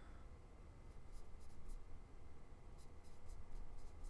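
Stylus writing numbers by hand on a tablet screen: light taps and scratches in a cluster about a second in and another near the end, over a low steady hum.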